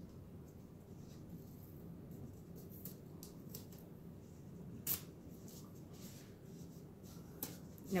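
Faint handling sounds of tape being pressed onto thin wooden dollhouse roof pieces: scattered small clicks and rustles, with one sharper click about five seconds in.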